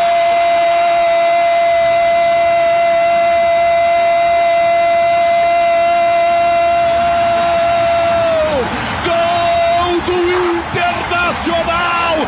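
Brazilian football commentator's long shouted "goool", celebrating a goal. It is held on one steady high pitch for about eight and a half seconds, then falls away, over stadium crowd noise. Rapid commentary follows near the end.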